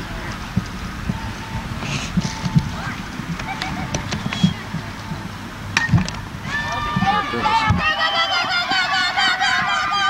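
Girls' softball game: background chatter, then a sharp crack about six seconds in, most likely the bat hitting the ball. It is followed by many high-pitched voices shouting and cheering as the play runs.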